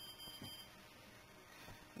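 A faint, high-pitched electronic tone, several pitches sounding together, that cuts off a little over half a second in.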